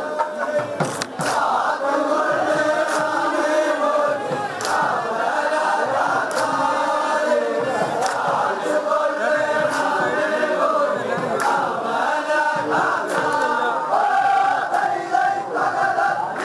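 A crowd of men chanting and singing together in unison, loud and continuous, with a few sharp clicks now and then.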